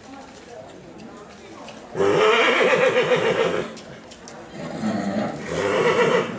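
Horse whinnying twice: a long, quavering neigh about two seconds in, then a second one near the end. Faint hoofbeats on the arena footing come before the first call.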